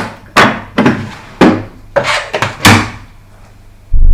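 Wooden clunks and knocks from a wooden machine toolbox cabinet: the slide-out spanner tray is pushed back in and the hinged wooden door is shut. There are about six sharp knocks over the first three seconds.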